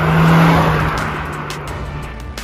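Honda Civic Type R FL5's turbocharged 2.0-litre four-cylinder engine and exhaust, with tyre noise, as the car drives off. The engine holds a steady pitch, is loudest about half a second in and fades after, with background music underneath.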